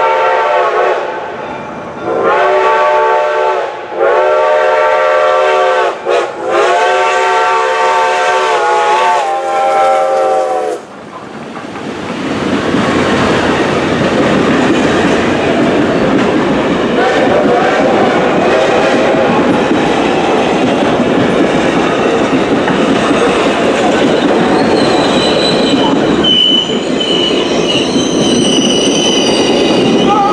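Reading & Northern T1 #2102 steam locomotive sounding its whistle in several blasts, the last held about four seconds, for a grade crossing. The locomotive and its passenger cars then roll past with a steady rumble and wheels clicking over the rail joints.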